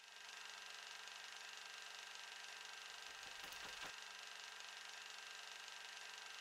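Near silence: faint steady room tone, a low hiss with a constant hum, with a few soft low sounds about three and a half seconds in.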